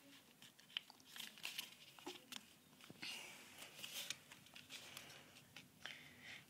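Faint rustling and crinkling of a square of paper being folded and creased by hand, with a few soft clicks as the corners are pressed flat.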